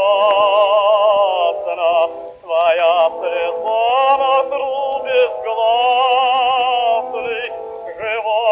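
An operatic baritone sings with wide vibrato over an orchestra, heard from an early gramophone record with a thin, muffled sound. The voice breaks off briefly between phrases about two and a half seconds in.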